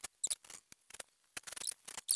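Scattered light clicks, taps and small splashes as a wet stainless steel pot is handled in a steel sink under the tap, which is being turned off near the end.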